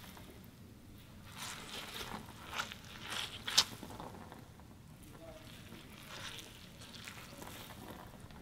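Hands squeezing and rubbing a small object right at a studio microphone, giving a few faint, short rustling squelches and one sharper crackle about three and a half seconds in: foley being made for a blood splat.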